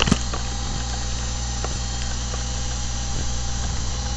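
Steady electrical hum and hiss from the recording microphone, with a few sharp clicks near the start from typing and clicking at the computer.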